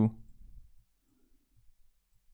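A man's spoken word trails off at the start, then near silence with a few faint, soft computer-mouse clicks.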